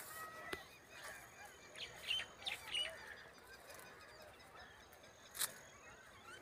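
Faint bird calls, many short calls in the first half, with a few soft clicks and one sharper click about five and a half seconds in.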